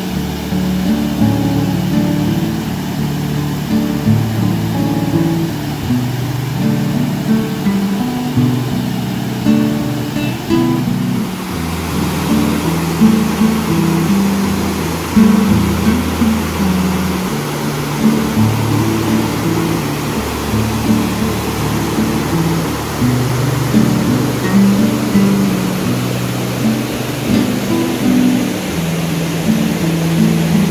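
Background guitar music with sustained low notes. About eleven seconds in, a steady rush of water from a weir waterfall comes up beneath it.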